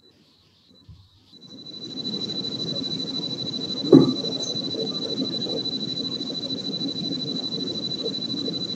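Steady background noise coming over a video-call line: it fades in after about a second and carries a constant high whine. A single knock sounds about four seconds in.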